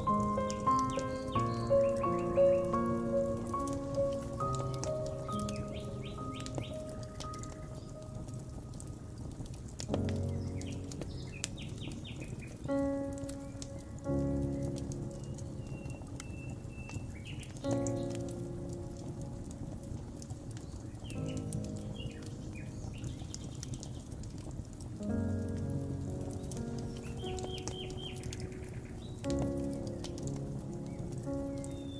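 Soft, slow piano music, with new chords struck every few seconds, over a steady crackle of a wood fire and short bird chirps now and then.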